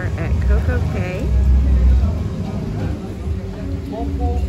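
Indistinct voices of people nearby, strongest in the first second, over a gusty low rumble of wind buffeting the microphone.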